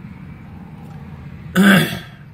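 Low steady background rumble, then near the end one short, loud guttural throat noise from a man, falling slightly in pitch.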